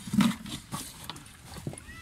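Fresh milkfish (bangus) being handled and dropped into a plastic bucket: one heavy thump about a quarter second in, then a few light knocks and slaps.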